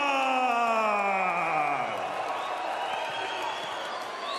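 A ring announcer's voice stretches the last syllable of a fighter's name into one long call that falls in pitch and fades over about two seconds, with an arena crowd cheering and whooping behind it. Near the end a rising whoop comes from the crowd.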